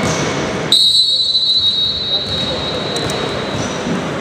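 A long, loud, high whistle blast, one steady note starting a little under a second in and held for about three seconds, over the voices and noise of a sports hall.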